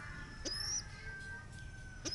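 Young pigeon (squeaker) giving one short, thin, high-pitched squeak about half a second in.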